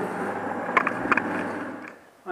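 Salvaged 14-inch band saw's half-horsepower electric motor running steadily and spinning the saw's wheels, with a few light clicks. It is running on a temporary power cord that bypasses the faulty switch, showing the motor itself works. The sound dies away near the end.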